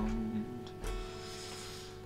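Final chords of a song on a capoed electric guitar, ringing out and fading, with one last strum just under a second in. A held sung note ends about half a second in.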